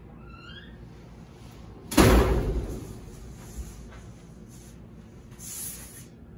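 A large sheet-aluminium sign blank flexing as it is handled, giving one loud bang about two seconds in that dies away over about a second, with faint squeaks and rustling around it.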